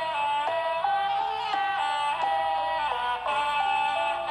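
Khmer traditional ensemble music led by a sralai, a reedy quadruple-reed oboe, playing a melody of held notes that step up and down about twice a second.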